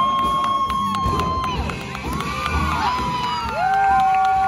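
Audience cheering loudly, with several long, high-pitched screams overlapping one another and scattered claps.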